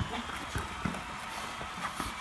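Basketball being dribbled on an outdoor court: a few sharp bounces, unevenly spaced.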